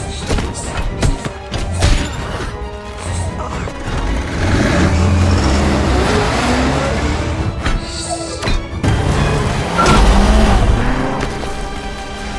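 Action-film soundtrack: music under fight sound effects, with a run of sharp hits in the first few seconds. From about four seconds in, an armoured vehicle's engine runs hard as it drives over rubble, and a heavy impact comes near the end.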